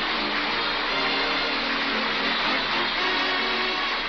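A studio audience applauding over a radio orchestra's short musical bridge at the close of a scene, heard on a muffled, band-limited old broadcast recording.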